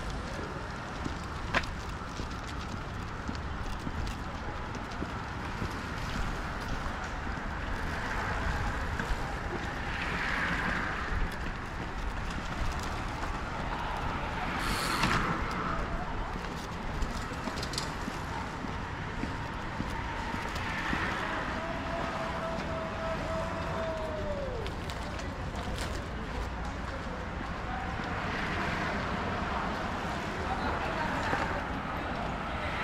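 Outdoor city street ambience: a steady low rumble of traffic with faint voices of passers-by. Past the two-thirds mark a tone holds for a few seconds and slides down as it ends.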